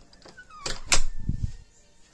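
An interior door being moved: a short squeak falling in pitch, then sharp clicks about a second in and a dull thud.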